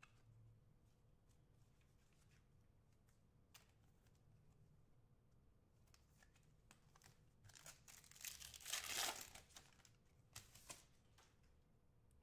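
Foil wrapper of a trading-card pack being torn open and crinkled, a loud crinkly tear about eight to nine seconds in. Before and after it come a few faint clicks and taps of cards being handled.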